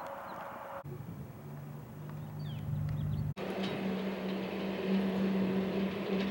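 Outdoor background with a steady low mechanical hum like a distant engine, and a few faint bird chirps about two and a half seconds in. The background changes abruptly twice, about one second in and again about three and a half seconds in.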